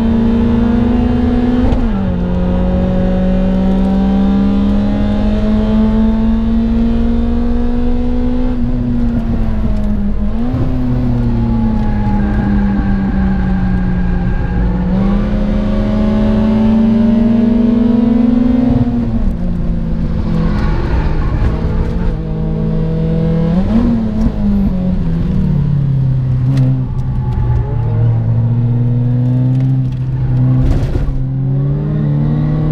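Citroën Saxo Cup's four-cylinder engine heard from inside the cabin while driven hard on track: the revs climb slowly under load, then fall quickly with short blips at gear changes a few times, over steady road and wind noise.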